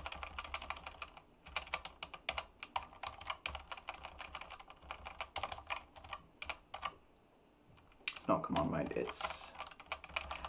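Computer keyboard typing: quick, irregular keystrokes for about seven seconds, then a pause of about a second.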